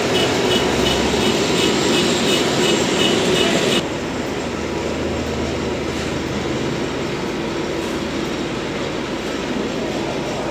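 Rumbling, rattling running noise of a moving vehicle heard from inside it, with a rapid high chirping that cuts off suddenly about four seconds in, leaving a quieter steady rumble.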